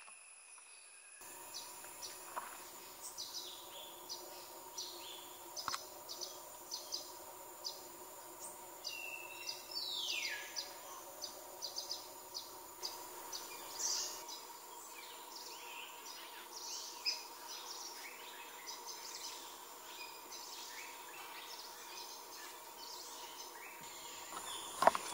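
Wild birds calling: a dense run of short, high chirps and notes, with one falling whistle about ten seconds in, over a steady low drone that sets in about a second in.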